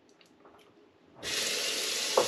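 Bathroom sink tap turned on about a second in, water then running steadily into the basin for a post-shave rinse.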